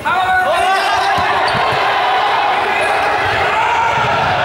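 A group of people yelling as they scramble up off the floor and run across an indoor sports court, shoes squeaking and feet thudding on the wooden floor. The sound starts abruptly and stays loud, with the hall's echo.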